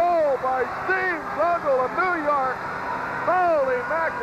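A male commentator's voice talking over a steady crowd roar in an arena.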